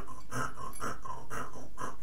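Hand saw drawn back and forth across a vinyl punching bag, a run of short rasping strokes about three a second.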